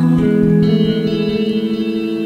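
Les Paul-style electric guitar played clean through heavy reverb: a few picked notes struck near the start and left to ring out, with no voice over them.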